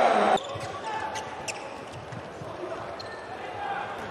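Handball court sound: the ball bouncing on the hall floor, with short knocks and faint squeaks, in a large echoing sports hall. A loud voice-like sound cuts off abruptly less than half a second in.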